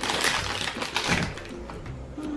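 A plastic blind-bag squishy packet crinkling and crackling as it is peeled open, for about a second and a half before it quiets down.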